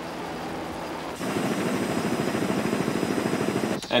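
Helicopter lifting off: the turbine engine runs with a thin, steady high whine over the rapid pulsing beat of the rotor, which grows louder about a second in. The sound cuts off abruptly just before the end.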